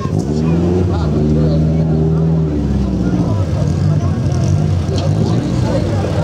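Opel Astra GSi rally car's engine revving as the car drives up onto the start ramp: the pitch climbs steadily for about two seconds, then drops back about two and a half seconds in and runs on at a lower, rougher idle.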